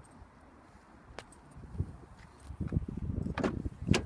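A Toyota Yaris front door being opened by hand: a click and a dull knock, then a second or so of scuffing and handling knocks, and near the end the latch releasing with one sharp click.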